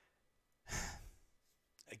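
A man's sigh into a close microphone, one breath about half a second long that fades out, followed by a small mouth click just before he speaks again.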